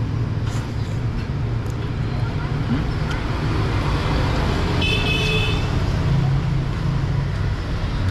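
Steady rumble of street traffic, with a short horn beep about five seconds in.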